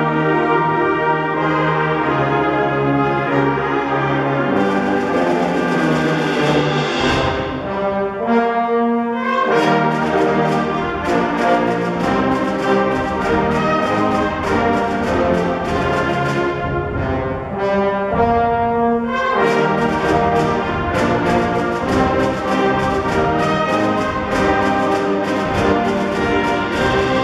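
Concert band playing a medley of Western film themes arranged to feature the trombone section: full brass chords with percussion. Cymbals come in a few seconds in, and the percussion keeps a steady beat through most of the rest.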